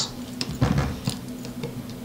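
Light, scattered clicks and taps of small parts being handled as an antenna connector and its threaded holder are pushed into a mount on a drone frame.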